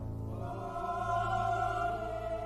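Choral music: voices holding long sustained notes over a steady low drone, entering about half a second in and swelling slightly.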